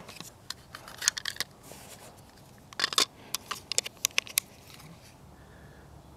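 Clear plastic waterproof housing of a GoPro Hero 2 being handled as the camera is fitted into it and shut: a run of sharp plastic clicks and light scrapes, in a cluster about a second in and another from about three to four and a half seconds.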